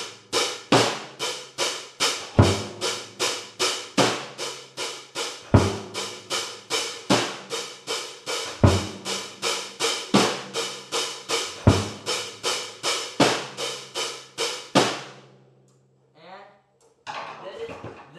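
CB Drums drum kit played in a steady beat: even strikes about three a second, with a deeper bass-drum hit about every second and a half. The beat stops sharply about fifteen seconds in.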